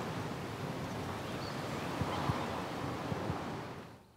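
Outdoor ambience: a steady rush of wind-like noise with a few soft low thumps, fading out sharply near the end.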